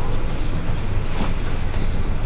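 Steady low rumble of room background noise between spoken lines, with a few faint ticks about a second in.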